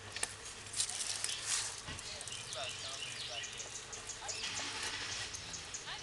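Small birds chirping in short, scattered calls over a steady outdoor hiss, with a few light knocks in the first two seconds.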